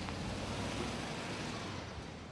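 Steady road noise of a car driving: an even rushing hiss with a low engine hum beneath it.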